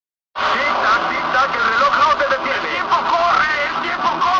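After silence, a loud sampled scene cuts in about a third of a second in: several voices at once over a dense, noisy background.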